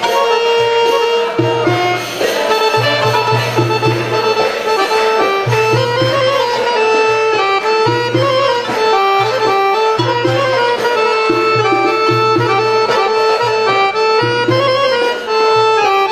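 Piano accordion playing a stepwise Arabic melody over a rhythmic low bass line.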